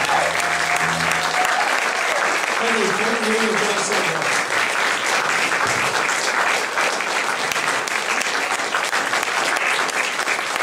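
Audience applauding steadily. The band's last chord, a held high note over low bass notes, dies away in the first second and a half, and a few shouts rise from the crowd about three to four seconds in.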